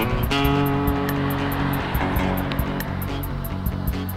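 Background music with a steady beat and a fast, regular high tick.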